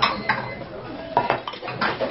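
Dishes clinking and clattering: bowls and a metal container handled and set down on a table, with about six sharp clinks.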